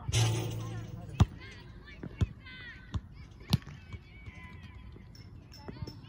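Volleyball being struck by hands during a rally outdoors: a series of sharp slaps roughly a second apart. There is a loud rushing burst in the first second, and faint voices in between.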